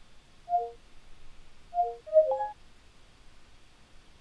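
Windows 10 Cortana voice-assistant sound cues: a short two-note electronic chime about half a second in, the same two-note chime repeated near two seconds, then a quick, louder run of tones right after. These mark the spoken query being taken and processed before Cortana answers.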